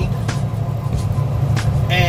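Steady low drone of a Kenworth T680 semi-truck's diesel engine heard inside the cab, holding back on a 6% downgrade with the jake brake (engine brake) engaged on its highest setting.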